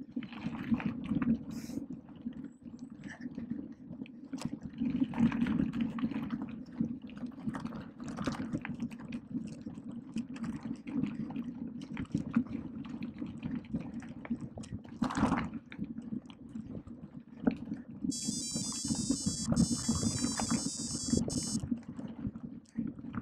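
Mountain bike rolling fast over a wet, stony gravel forest road: the tyres crunch and crackle over loose stones, with a steady low rumble and frequent rattles from the bike. Near the end a high, buzzy, stuttering tone comes in for about three seconds.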